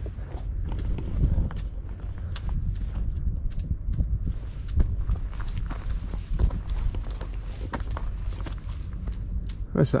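Footsteps crunching on a stony dirt path, an irregular run of short steps, over a steady low rumble.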